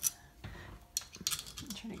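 A few short, light metallic clicks and rattles of a doorknob and its long mounting screw being handled and shifted against the door while the screw is lined up with its hole.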